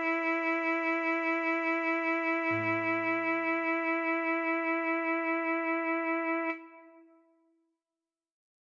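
Alto saxophone holding one long tied note, written C♯ (sounding E), with a slight regular pulse. A soft low accompaniment plays beneath it, its bass note changing about two and a half seconds in. Both stop together about six and a half seconds in, leaving a short fade.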